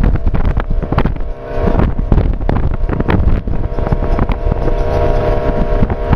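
A vehicle's engine and road noise heard from inside it while it drives, a low rumble with a steady engine hum. Wind buffets the microphone in irregular gusts.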